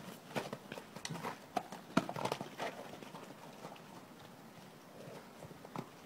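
A horse's hooves striking muddy, partly icy ground as it runs off, irregular hoofbeats for about the first three seconds that then fade, with a few more near the end.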